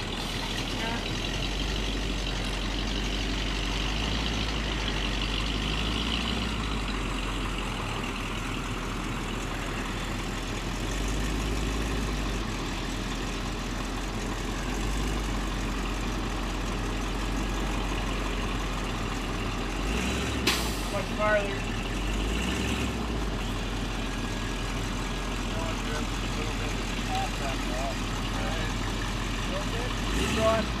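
Truck engine idling steadily, with one sharp knock about two-thirds of the way through.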